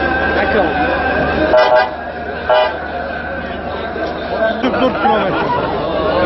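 An ambulance's horn tooting twice, short and about a second apart, over steady crowd chatter.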